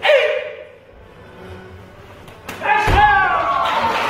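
A loud martial-arts shout at the start, then about two and a half seconds in a single sharp crack as a kick strikes a stick held high overhead, followed at once by loud shouting and cheering.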